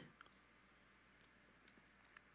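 Near silence: room tone, with one faint tick just after the start.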